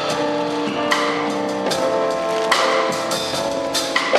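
A live smooth jazz ensemble improvising: a drum kit with cymbal strikes and congas under held melodic notes from other instruments.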